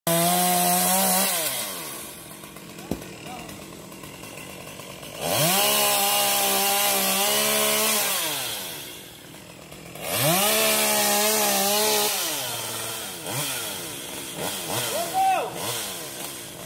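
Chainsaw cutting into oak wood, running at full speed in three bursts: the first dies away in the opening second or so, the next two each last two to three seconds, and the saw drops back in between.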